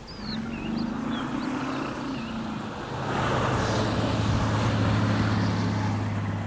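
A motor vehicle's engine humming steadily, with road noise swelling about halfway through as it passes. Brief bird chirps are heard in the first couple of seconds.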